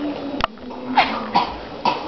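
A sharp click about half a second in, then three short, clipped vocal sounds from a person, each falling in pitch.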